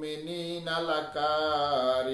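A man chanting Quranic verses in Arabic recitation style, one unbroken melodic line with long held notes that rise and fall slowly.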